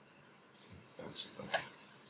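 A few short, sharp computer mouse clicks, the first about half a second in, as a dialog's Confirm button is clicked.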